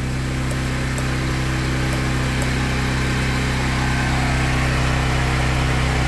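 Steady low electrical hum with even overtones, getting slightly louder as it goes on.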